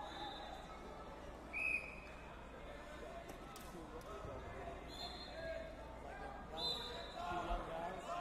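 Background chatter of many people echoing in a large gym hall, with a few short high-pitched squeaks, about two seconds in, about five seconds in and near the end.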